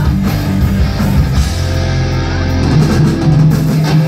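Live rock band playing loud, with electric guitar, bass and drum kit, heard from within the audience. The low end drops out for a moment near the end.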